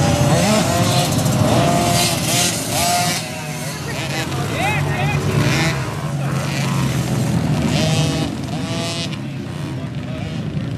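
Small dirt bike engines, among them Honda CRF110 single-cylinder four-strokes, revving as the bikes ride round a motocross track, the pitch climbing and dropping over and over as the riders open and close the throttle.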